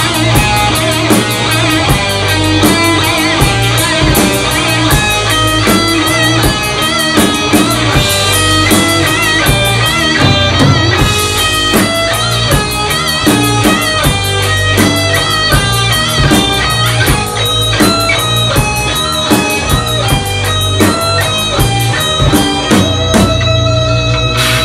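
Thrash metal band playing live: distorted electric guitars with a wavering, bending lead line over bass and fast, steady drumming.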